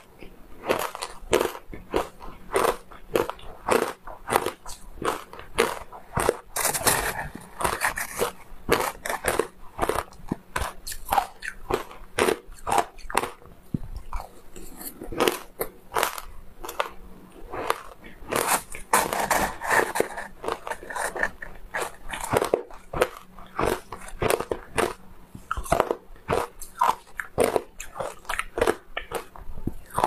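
Shaved ice topped with matcha and milk powder being bitten and chewed, a steady run of sharp, close crunches several a second.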